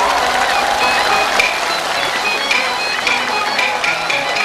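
Beijing opera instrumental accompaniment: a high, reedy melodic line in short repeated notes, joined from about halfway through by sharp, quick percussion clicks at a steady beat.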